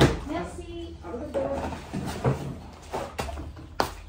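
Scattered, indistinct bits of voice, with a sharp knock at the start and another near the end.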